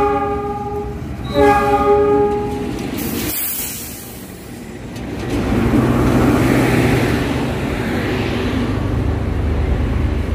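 Diesel locomotive's horn sounding two blasts, the second about a second after the first ends. Then the locomotive and its passenger coaches roll slowly past with a steady rumble as the train pulls into the station.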